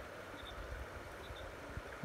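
Faint steady outdoor background noise, with a few tiny high peeps.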